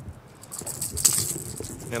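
Light metallic jingling and clicking of a lipless crankbait's rattles and treble hooks as the lure is worked free from a bass's mouth by hand. It starts about half a second in.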